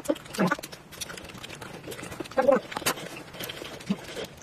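Close-miked eating sounds: wet chewing and smacking with many sharp mouth clicks, and two louder wet bursts about half a second and two and a half seconds in.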